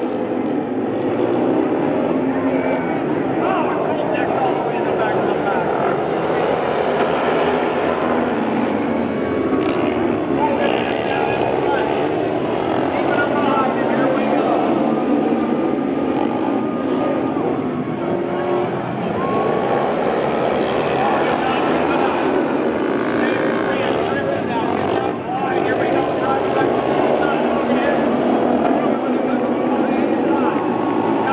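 Several speedway motorcycles racing, their single-cylinder engines running hard throughout, with the pitch rising and falling as the bikes accelerate through the turns and pass by.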